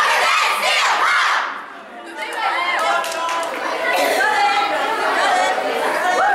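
A group of girls shouting together in a team huddle cheer, breaking off briefly just before two seconds in, then many voices talking and calling out at once.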